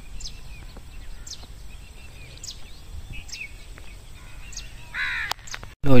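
Birds calling outdoors: a short, high call repeated about once a second over a low rumble, then a harsher, longer call near the end, after which the sound cuts off abruptly.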